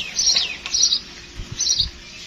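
House sparrow chirping: three short, high chirps in quick succession, with a quick falling note at the start.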